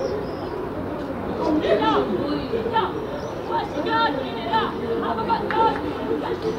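Indistinct shouts and chatter of young footballers calling to each other during play.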